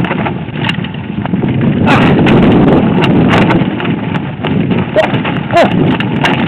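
Mountain bike riding down a rough, rocky trail: wind buffeting the microphone and a steady rumble of tyres on stones, with frequent sharp rattles and knocks from the bike. Two short squeaks come near the end.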